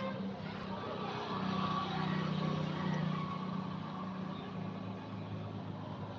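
Steady low engine hum, growing a little louder in the middle and then easing off.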